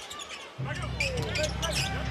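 Basketball being dribbled on a hardwood arena court amid arena crowd noise, with a steady low bass line coming in about half a second in.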